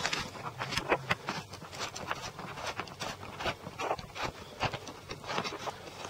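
Irregular light clicks and knocks, handling noise as the camera is moved and set up on a tripod.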